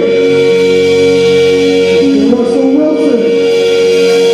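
Live rock band playing loud, with a male voice singing over a sustained chord.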